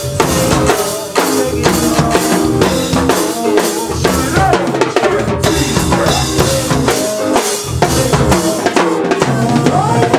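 Go-go band rehearsing: a drum kit and a set of timbales played with sticks keep a steady, busy go-go beat of kick, snare rimshots and timbale hits, with a pitched melody line bending up and down above the drums.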